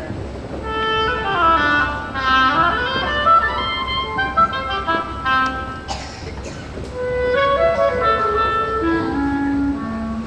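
Woodwind quintet of flute, oboe, clarinet, bassoon and French horn playing together: quick runs rising and falling over held notes, with a lower line stepping down near the end.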